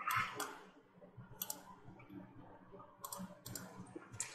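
Faint clicking of a computer mouse: a few scattered clicks, with a small cluster near the end.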